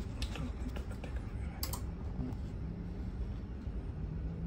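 Several sharp plastic clicks, the loudest about one and a half seconds in, from buttons pressed on a Mitsubishi Electric PAR-21MAA wired remote controller as the air conditioner is switched on. A steady low hum runs underneath.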